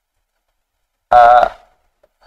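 A person's voice: one short vocal sound about half a second long, coming about a second in.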